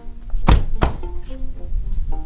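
Two heavy thunks about a third of a second apart, an SUV's doors being shut, over background music.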